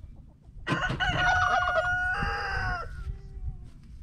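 A rooster crowing once, a call of about two seconds that starts just under a second in, its last part drawn out and falling away.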